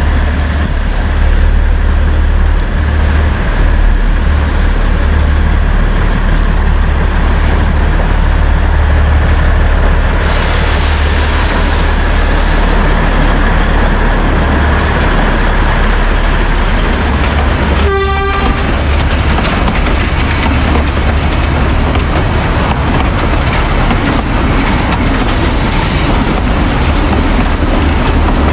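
The Matheran toy train, a narrow-gauge diesel locomotive hauling coaches, runs past close by with a loud, steady rumble. A short horn toot sounds about eighteen seconds in.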